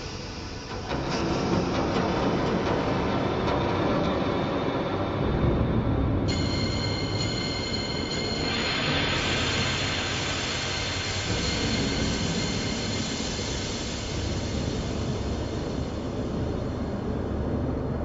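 Steady traffic rumble from a road bridge overhead, louder about a second in, with a high squeal in the middle lasting a few seconds.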